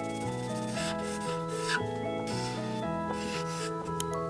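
Felt-tip marker rubbing across paper in short repeated strokes, over background music of steady melodic notes.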